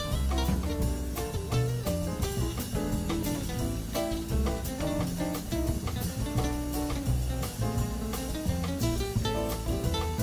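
Background music: guitar-led instrumental with a steady drum beat.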